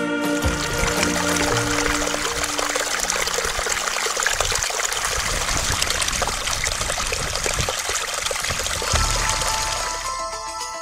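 A small mountain brook trickling and splashing over mossy rocks in a steady rush of water. Soft background music runs beneath it and fades during the first few seconds.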